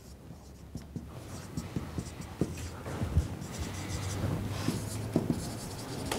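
Marker pen writing on a whiteboard: a run of short scratchy strokes and light taps as words are written out, getting busier about halfway through.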